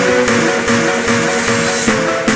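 Hardstyle electronic music: held synth melody notes with a noise sweep rising and getting louder towards the end, building up to the kicks.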